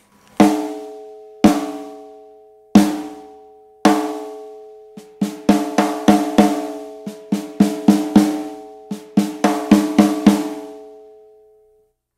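Snare drum struck with 'one-third' rimshots: the stick hits rim and head together, a third of its length across the rim and the tip off centre, for a mid-range crack with a long, overtone-rich ring. Four single hits about a second apart come first, then a quicker pattern of rimshots from about five seconds in, and the ring dies away near the end.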